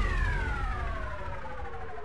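Electronic dance music transition effect: a synth downlifter, a pitched tone sweeping steadily down and fading out as one track of the mix ends, over a fading low bass rumble.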